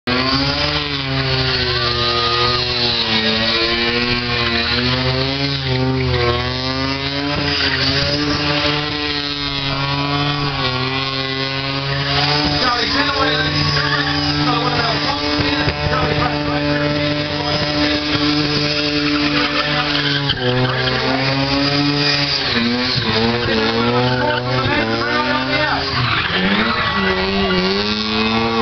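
A car engine held at high revs during a burnout, its pitch rising and dipping repeatedly, then held steady for several seconds in the middle before rising and falling again, over the hiss and squeal of rear tyres spinning on the asphalt.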